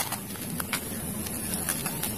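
Steady outdoor background hiss with a few faint clicks as a plastic toy rifle is handled and picked up off the ground.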